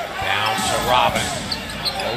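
A basketball dribbled on a hardwood arena court, thumping at an uneven pace under steady arena crowd noise, with a voice talking over it.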